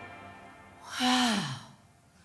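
A long, breathy vocal sigh that slides down in pitch, about a second in, as the last note of the stage orchestra dies away.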